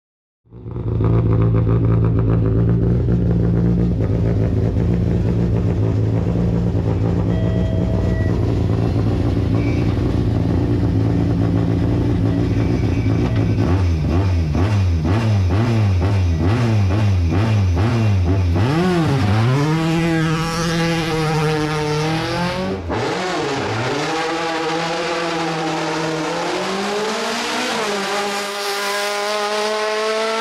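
Škoda Octavia Cup race car engine held at steady revs, then revved up and down from about halfway, and finally accelerating hard with rising revs broken by quick drops at each gear change.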